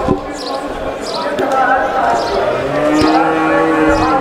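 A cow mooing: one long, low call in the second half, over the chatter of a crowd. A few sharp knocks sound through it.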